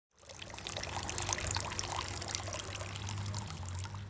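A thin stream of water poured from above into a stemmed drinking glass, splashing and bubbling steadily, with a low steady hum underneath.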